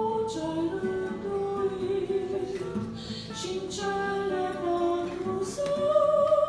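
A woman singing a slow melody into a microphone, with guitar accompaniment.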